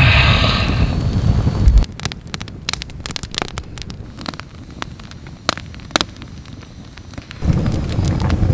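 Campfire of split firewood burning in an iron fire pit, crackling with irregular sharp pops and snaps. A loud low rumble covers it for about the first two seconds and comes back near the end.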